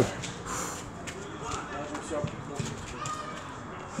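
A few light footsteps of people in trainers on concrete steps and paving, with faint distant voices.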